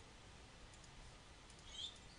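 Near silence with a few faint computer mouse button clicks, the loudest near the end.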